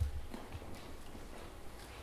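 A few soft, irregular knocks with a low rumble: handling noise as a handheld microphone is taken up and passed to a new speaker.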